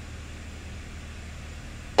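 Faint, steady low drone of a single-engine light aircraft's piston engine and cabin noise, the engine throttled back to about 2000 rpm for a descent.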